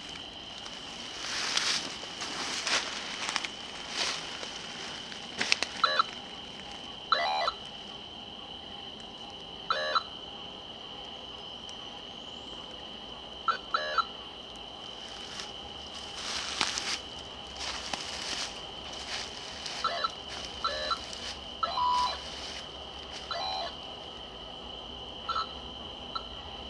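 Night woods: a steady high-pitched insect chorus throughout, with short animal calls every few seconds, each under half a second, and bursts of rustling through brush.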